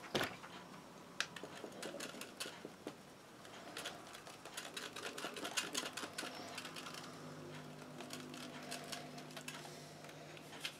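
Handheld battery static grass applicator shaken over a terrain board: quick rattling clicks from its sieve cup, with a loud click right at the start. A steady low hum comes in about two-thirds of the way through.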